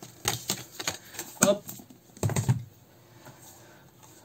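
Pages of a thick comic book being leafed through and handled: a quick run of short crisp page flicks and rustles, dying down about two and a half seconds in.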